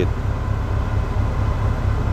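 Steady low rumble of a ship's engine heard on deck while under way, with an even hiss of wind and water above it.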